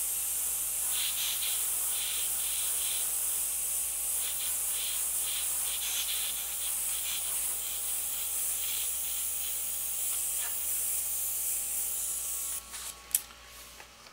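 Iwata HP-CS Eclipse gravity-feed airbrush spraying paint with a steady hiss of air, which stops about a second before the end. A few short clicks and knocks follow.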